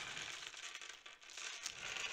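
Dozens of polyhedral dice pouring out of a cloth drawstring bag and clattering onto paper on a table: a continuous rattle of small clicks with a short lull about a second in.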